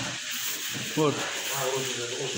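Speech: a man says a short word, with other voices talking behind him over a steady background hiss.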